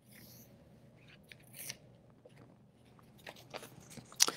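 Faint rustling and a few soft clicks from a person moving about close to the microphone, over a low room hum.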